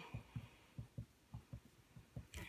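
A run of faint, irregular low taps, about four a second: a pen writing on a sheet of paper over a hard tabletop.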